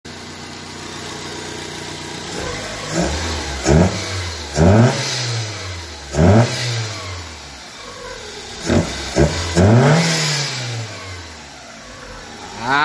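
Fiat Uno's 1.0 8-valve Fire four-cylinder engine, naturally aspirated through an open cone air filter, idling steadily and then blipped about seven times, each rev rising quickly and sinking back to idle.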